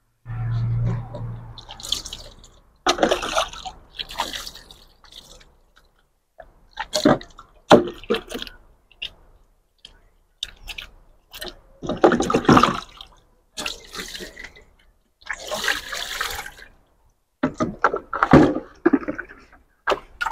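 Water running and splashing in a sink as dishes are washed by hand, in about six separate bursts of a second or two each, with abrupt silences between them.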